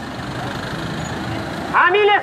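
Steady street noise from traffic and a crowd on foot, with faint voices in it; near the end a man starts shouting a slogan.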